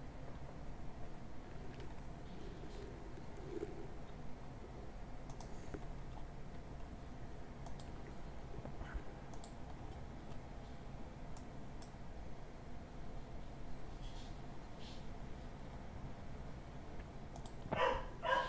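Faint, scattered clicks of a computer mouse, a dozen or so at irregular intervals, over a low steady room hum.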